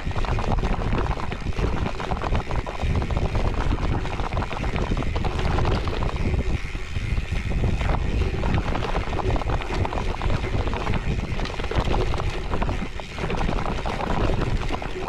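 Cervélo Áspero 5 gravel bike on Panaracer GravelKing X1 40 mm tyres rolling over a rough dirt and grass track, with frequent small knocks and rattles from the bike over the bumps. Wind buffets the camera microphone with a low rumble, easing briefly near the end.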